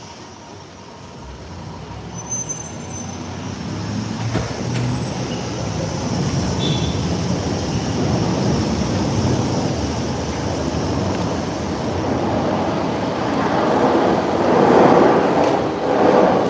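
Elevated train passing overhead on a steel structure: a rumble that builds over several seconds and is loudest near the end, with thin high wheel squeals in the first few seconds.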